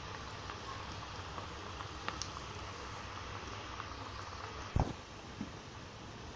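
Cabbage bonda fritters deep-frying in hot oil in a kadai: a steady sizzle with scattered small crackles. A single dull thump sounds nearly five seconds in.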